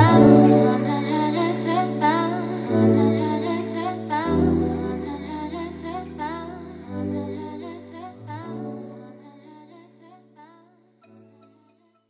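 Closing bars of a mellow tropical house song: held chords over a bass line that changes every second or two, with a wordless hummed vocal line above. The music fades out steadily and stops just before the end.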